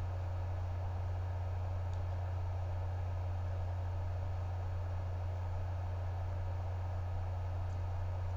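Steady low electrical hum with a faint hiss and no distinct snips or other events.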